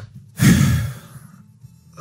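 A man's heavy, exasperated sigh, breathed out about half a second in and trailing off within a second.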